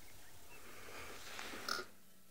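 Faint outdoor ambience at a waterhole with wildebeest, with a few small chirps and a soft animal sound. Near the end there is a short sharp call, then the sound drops suddenly to a quieter steady hum as the live feed switches to another camera.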